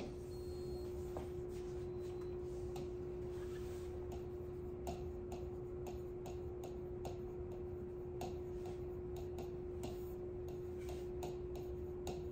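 Irregular sharp taps and clicks of writing on the glass of an interactive touchscreen display, coming thicker after about five seconds, over a steady hum.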